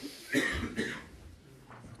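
A person coughing once: a short burst about a third of a second in that trails off within a second.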